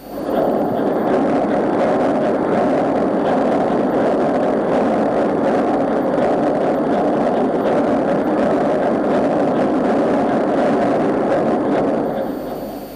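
Burmeister & Wain K90GF slow-speed two-stroke marine diesel engine running at low speed after a piston replacement: a steady, loud mechanical din that comes in suddenly at the start.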